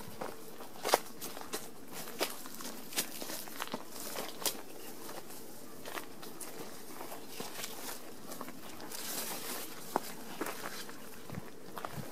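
Footsteps walking through long grass and undergrowth: irregular soft crackling steps with a few sharper clicks among them.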